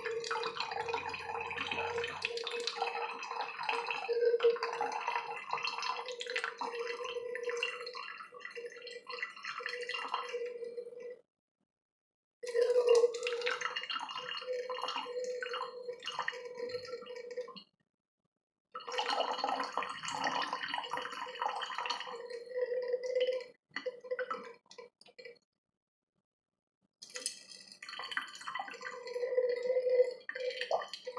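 A thin stream of water poured from a plastic bottle into an open metal drink can, trickling and splashing with one steady note ringing from the can. The pour breaks off three times for a second or so, about 11, 18 and 26 seconds in.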